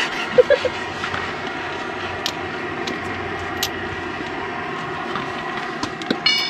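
A steady mechanical hum with a few sharp metallic clicks, about two and three and a half seconds in, from a wrench working the wheel nuts on a JCB backhoe's wheel hub.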